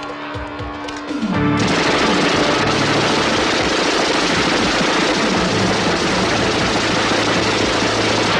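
Film soundtrack: the score plays alone at first. From about a second and a half in, a dense, continuous din of rapid gunfire runs on over the music.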